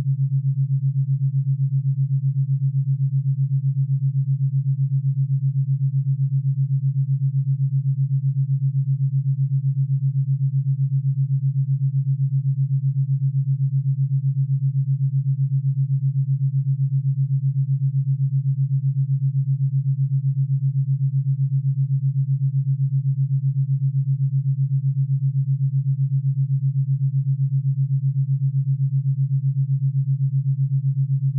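Theta binaural beat: two low pure tones, one for each ear, set 7.83 Hz apart (the Schumann resonance rate), heard together as a steady low hum that pulses about eight times a second.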